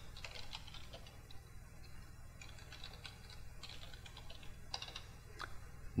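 Faint typing on a computer keyboard: irregular, scattered key clicks.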